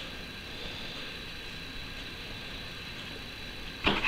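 Steady background hiss with a faint, thin high-pitched whine. Near the end comes a short crackle of paper being handled as the swing tag is opened.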